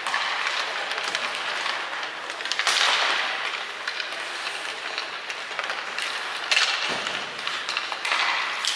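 Ice hockey skate blades scraping and carving across the ice, with sharp clacks of pucks off sticks and boards, in a large, nearly empty rink. A louder rush of noise comes about three seconds in.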